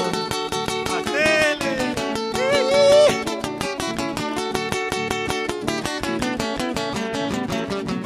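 Two acoustic guitars strummed fast and evenly in an Argentine folk gato rhythm, an instrumental break between sung verses.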